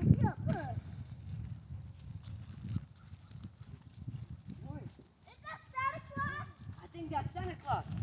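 Footsteps on grass and scattered dry leaves as people walk along. High-pitched children's voices call out briefly at the start and several times in the second half.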